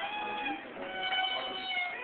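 Fiddle and acoustic guitar playing a live tune, with the fiddle sliding between notes.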